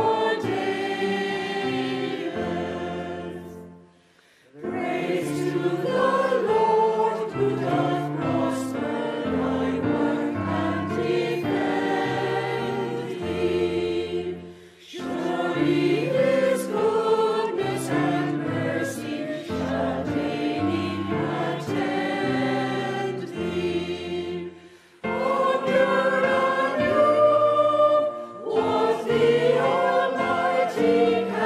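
Mixed choir of men's and women's voices singing a hymn, with short breaks between phrases about four, fifteen and twenty-five seconds in.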